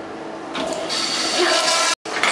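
Commercial flushometer-valve toilet flushing: a rush of water that swells about half a second in and cuts off suddenly just before the end.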